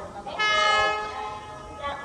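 Locomotive horn giving one steady blast, about a second and a half long, as a train approaches the station.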